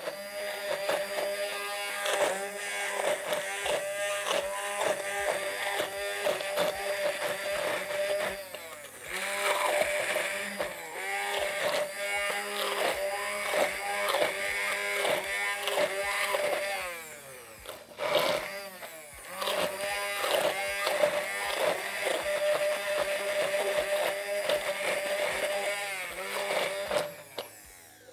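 Hand-held electric stick blender running in a tall beaker, pureeing a thick green mixture. It eases off briefly a few times as it is lifted and moved, then stops near the end.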